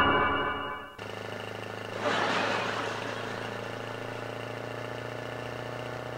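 Synth music fades out in the first second, then a van's engine runs with a steady hum. About two seconds in, a rush of noise swells and slowly fades.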